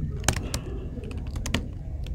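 Keystrokes on a computer keyboard as a short filename is typed: several irregularly spaced clicks, a few in quick succession about a second and a half in.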